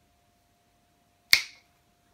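A single sharp finger snap about a second and a half in.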